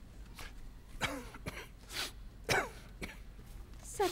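An elderly man coughing: a short fit of four or five harsh coughs spread over the few seconds, the loudest a little past halfway.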